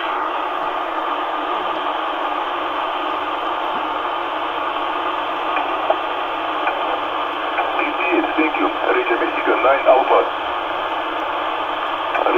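Shortwave transceiver receiving on 10-metre upper sideband: a steady, band-limited static hiss, with a weak, garbled sideband voice coming through from about eight seconds in.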